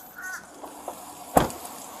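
A bird gives a short call near the start, then a single sharp knock about a second and a half in, which is the loudest sound.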